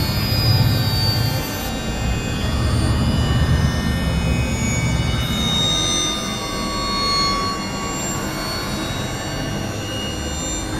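Dense experimental electronic music with several tracks layered at once: a heavy, low rumbling drone under many sustained tones, with a falling glide about five seconds in. The rumble thins out after the first half.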